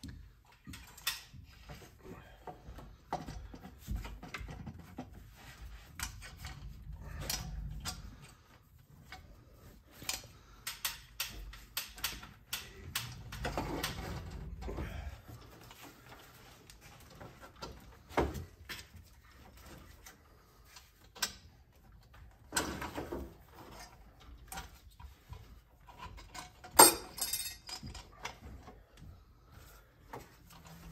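A metal intake manifold being wrestled into place on a 6.0 Powerstroke diesel: irregular clunks, knocks and rattles of metal against the engine and wiring harness, with handling rustle in between. The sharpest knock comes about three seconds before the end.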